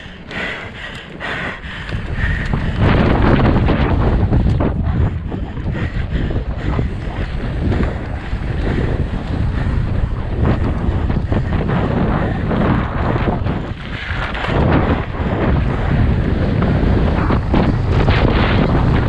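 Wind buffeting the on-board camera microphone of a mountain bike descending at speed, with the tyres rumbling and crunching over loose gravel and many small knocks and rattles from the bike. It grows much louder about two seconds in as the bike speeds up onto the open gravel track.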